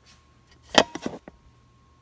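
A quick cluster of sharp handling knocks and clatters from lab equipment being picked up on a benchtop, about a second in, the first the loudest.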